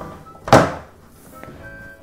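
A single plastic thunk about half a second in as the opened electronic toy picture book is handled on the table, with soft background music.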